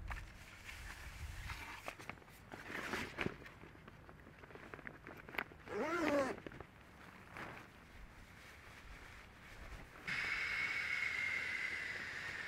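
Faint rustling and clicking of outdoor gear being handled: nylon bags, straps and the coated fabric of a packraft. A short squeaky sound comes about six seconds in, and a steady hiss starts near the end.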